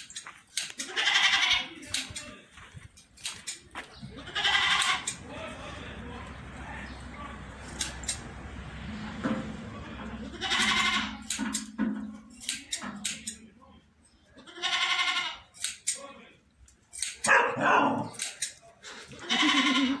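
Goats bleating, about six separate calls a few seconds apart.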